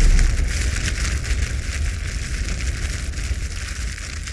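Crackling fire sound effect over a low rumble, trailing off slowly after a boom, as the tail of a logo sting.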